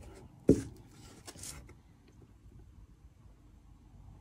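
A hand wiping sanding dust off the painted leather surface of a watch box, a few soft rubbing strokes in the first second and a half. A single sharp knock sounds about half a second in.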